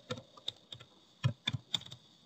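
Computer keyboard being typed on: about seven separate keystroke clicks, irregularly spaced.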